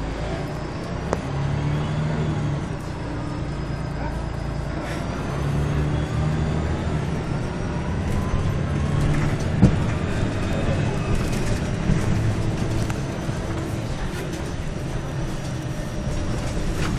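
Volvo B10MA articulated bus heard from inside the passenger cabin while under way: its straight-six diesel running steadily under a thin whine that rises slowly in pitch as the bus gathers speed. A sharp knock about ten seconds in, and a smaller one about a second in.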